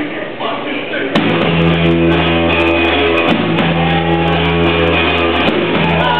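Live rock power trio of electric guitar, bass guitar and drums kicking into a song about a second in, with voices just before. They play a loud, sustained low riff over drum and cymbal hits, with two brief breaks in the held notes.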